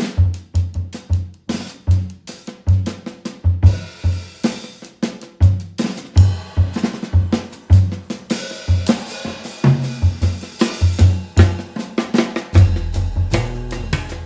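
Jazz drum kit played solo, a busy pattern of bass drum, snare and cymbal hits. An upright bass joins near the end with low plucked notes.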